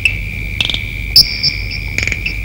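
Crickets chirping: a steady high trill, with a few louder, higher chirps in the second half.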